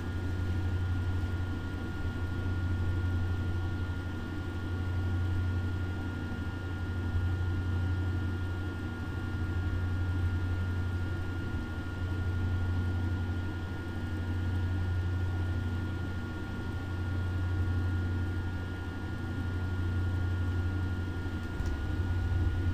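Steady low hum with a thin, high, steady whine above it, swelling and easing gently about every two seconds.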